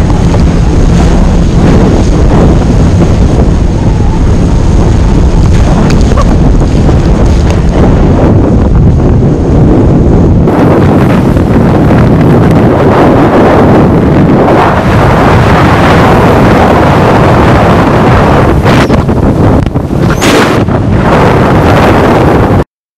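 Loud, steady wind buffeting the microphone, with water rushing and spraying past an inflatable banana boat being towed at speed over the sea. The noise changes character about halfway through.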